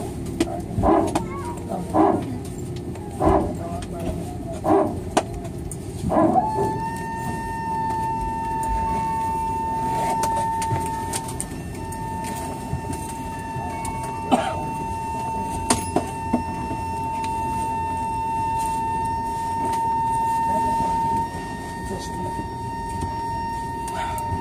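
Airliner hydraulics heard from inside the cabin: about five short barks roughly a second apart, like a dog barking, then from about six seconds in a steady high whine. The barking is typical of the hydraulic power transfer unit cycling.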